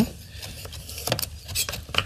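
Chef's knife slicing a raw carrot on a wooden cutting board: a few light knocks of the blade on the board.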